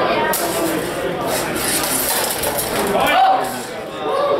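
Steel rapier and dagger blades clinking and scraping against each other in a fencing exchange, for about the first three seconds.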